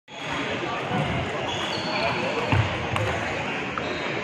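Table tennis ball knocking off bats and the table a few times in an echoing hall, over background chatter.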